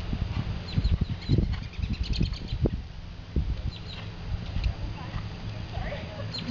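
A horse's hooves thudding on arena sand in a run of low thumps, with small birds chirping in short high notes.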